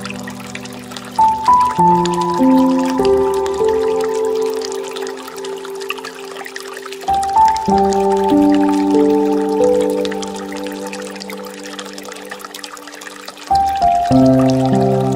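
Slow, gentle piano music with held notes and a new chord every few seconds, over the steady trickle of water pouring from a bamboo water fountain.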